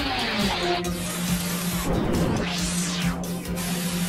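Cartoon soundtrack music put through a heavy distortion effect, harsh and fuzzy. A low steady hum holds from about half a second in, and a whooshing sweep rises and falls near the middle.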